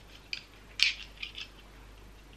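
A few small plastic clicks and rustles from handling a battery box and a string of pink LED fairy lights, the loudest a little under a second in.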